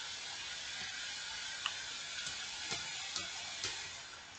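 Low, steady hiss of room tone and recording noise, with a few faint clicks scattered through it.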